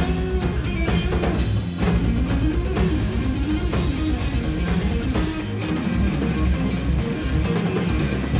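Live instrumental hard rock band playing: electric guitar lines over electric bass and a full drum kit, with regular drum and cymbal hits.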